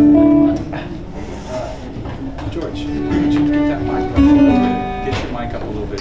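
Acoustic guitar played loosely and without a steady rhythm: a few held notes and chords ringing out, loudest near the start, about three seconds in and again near four and a half seconds. Voices murmur underneath.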